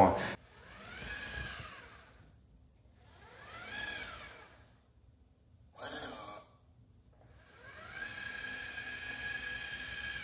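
iRobot Braava Jet M6 robot mop running quietly on a hardwood floor, its drive motors whining up and down in pitch twice as it moves. A brief hiss about six seconds in is its jet spraying cleaning solution. A longer, steadier whine follows near the end.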